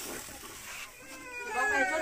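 A thick curry sloshes faintly as it is stirred in a clay pot. Then, from about a second in, a cat meows in a drawn-out, wavering call that grows louder.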